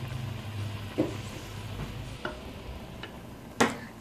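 A pot of lentils (dal) boiling hard, bubbling and spattering, with a few small pops and a sharper knock near the end.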